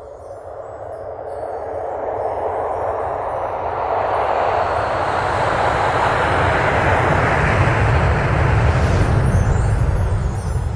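Sound-design riser for an animated logo: a dense whoosh that swells steadily louder over about eight seconds with a deep rumble underneath, and light tinkling chimes at the start and again near the end.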